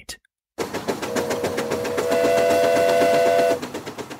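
Steam locomotive sound effect: rapid, rhythmic chuffing, with the whistle sounding a steady chord of several notes from about a second in. The sound fades out near the end.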